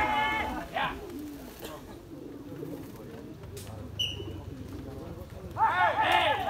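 Men calling out in long, loud, rising-and-falling shouts to bring racing pigeons down to the landing pole; the calls break off within the first second and start again near the end. In between are a low murmur and one short high whistle about four seconds in.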